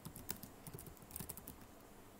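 Computer keyboard keys being typed: a quick, faint run of light clicks as a short terminal command is entered.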